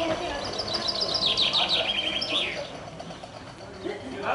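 A small songbird singing one phrase of quick, high, repeated chirps that run into a brief trill and end with a falling note a little under three seconds in.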